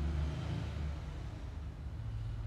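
A low, steady background rumble.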